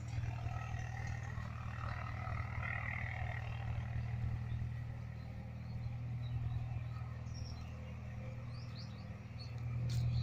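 A steady low motor-like hum runs throughout, with a few short bird chirps in the second half.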